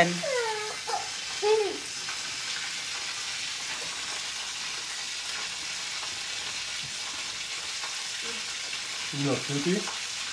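A steady, even hiss throughout, with brief voice sounds in the first two seconds and a voice again near the end.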